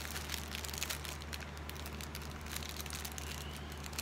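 Small plastic bags of diamond-painting drills crinkling and rustling faintly as they are handled, over a steady low hum.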